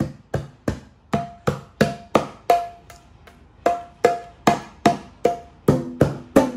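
A pair of small bongo drums slapped by a toddler's open hands in a steady beat, about three strikes a second, each with a short ringing tone. The strikes pause for about a second midway, then resume.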